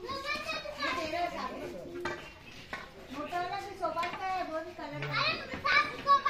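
Chatter of several people talking, children's voices among them.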